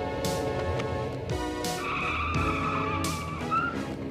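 Background music with a beat; about halfway through, a car's tires squeal for nearly two seconds.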